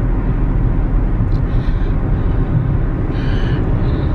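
Car cabin noise: a steady low rumble of road and engine noise heard from inside the car, with two faint brief higher sounds partway through.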